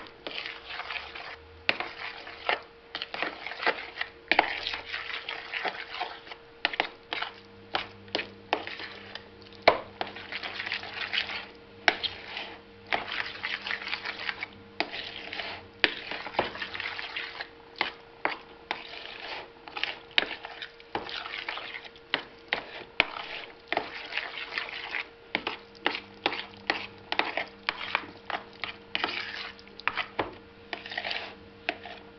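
A metal fork stirring and mashing thick egg spread in a plastic bowl: irregular sharp clicks as it knocks the bowl's rim and sides, between wet scraping as it works mayonnaise into the chopped hard-boiled eggs.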